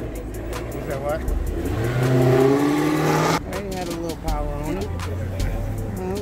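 A car engine revving up as it accelerates along the street, rising in pitch for about two seconds and then cutting off suddenly. Voices and music with a steady beat run underneath.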